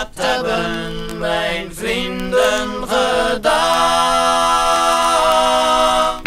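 A group of voices singing a Dutch song unaccompanied in close harmony, phrase by phrase, ending on one long held chord about halfway through.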